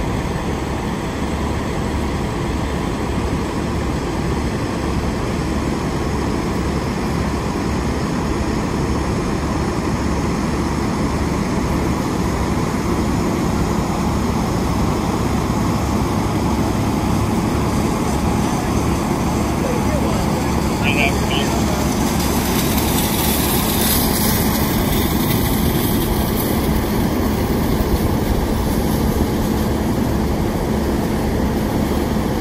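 Idling fire apparatus and ambulances: a steady, loud engine drone that runs without a break.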